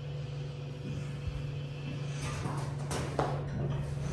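Otis Hydrofit hydraulic elevator running, heard from inside the car: a steady low hum, with a few short knocks and rattles about two and three seconds in.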